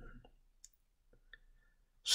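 Near silence in a pause between speech, broken by two faint short clicks about half a second apart.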